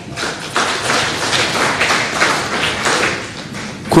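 Audience applauding, a dense patter of many hands clapping that swells up just after the start.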